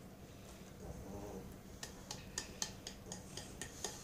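A hand tapping the base of an upturned ceramic bowl to knock canned tuna out onto a tart: a series of light, quick taps starting about halfway through, roughly four or five a second.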